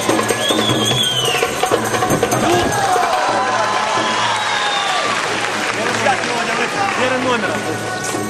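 Muay Thai fight music with a wailing pipe line over drums and hand percussion. Over it, a crowd of spectators shouts and calls, loudest through the middle.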